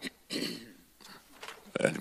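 A man briefly clears his throat at a microphone about a third of a second in, then starts to speak with an "uh" near the end.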